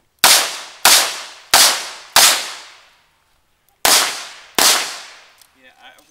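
Six handgun shots: four in quick succession about two-thirds of a second apart, a pause of more than a second, then two more. Each shot trails off in a long echo.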